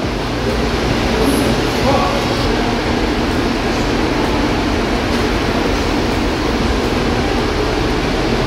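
Steady, loud mechanical rushing hum of an aquarium hall's building machinery, such as ventilation and water-circulation plant, with a faint voice heard briefly about two seconds in.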